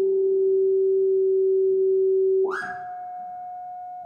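ARP 2600 synthesizer holding a steady, near-pure tone. About two and a half seconds in, a brief noisy attack brings in a higher, quieter held note.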